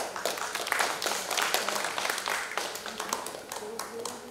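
Audience applauding, a dense patter of clapping that starts at once and thins out near the end.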